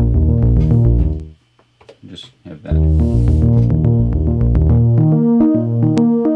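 Cherry Audio Minimode, a software recreation of the Minimoog synthesizer, with its first two oscillators playing a fast arpeggio of notes. The arpeggio stops just over a second in and starts again a little before halfway.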